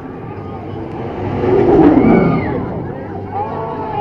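Drop tower gondola falling and being caught by its magnetic brakes: a rushing sound swells to a loud peak about two seconds in and falls in pitch as the car slows, with riders screaming.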